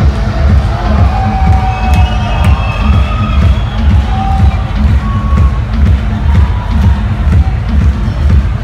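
Techno played loud over a club sound system, with a steady four-on-the-floor kick drum, and the crowd cheering over it.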